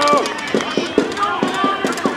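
Voices of players and spectators shouting and calling across a children's football match, many of them high-pitched, with short sharp knocks among them.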